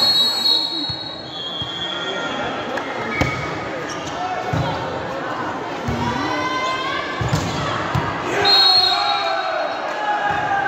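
Volleyball rally in an echoing sports hall: a referee's whistle blows at the start, the ball is hit with several sharp slaps a second or so apart over the middle, players and spectators shout, and another whistle blast sounds near the end as the point is decided.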